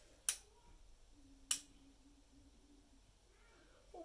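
Two sharp clicks of a lamp switch, about a second apart, as a large spiral compact fluorescent bulb is switched on, then a faint steady hum.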